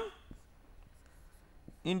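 Marker writing on a whiteboard: a few faint scratches and taps between spoken words.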